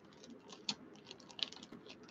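Clear plastic zip-top bag crinkling and crackling quietly as it is handled and opened to pull out a card pack, with a couple of sharper crackles.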